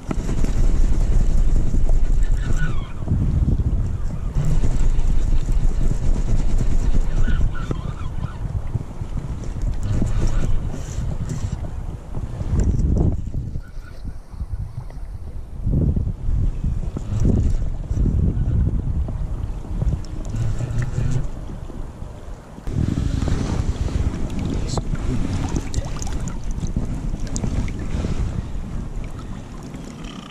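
Wind buffeting a small camera microphone: a loud, uneven low rumble that swells and drops in gusts, easing for a moment around the middle.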